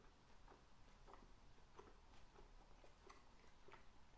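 Faint close-miked chewing of a mouthful of tomato and avocado salad: soft, wet mouth clicks recurring about every half second to second.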